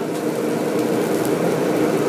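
Steady sizzle of food frying on an okonomiyaki griddle, with a low, even hum running under it.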